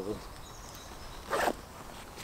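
A backpack's pocket zipper pulled once, a short rasp a little after a second in, on the top fleece-lined pocket of a 5.11 Rush 24 2.0.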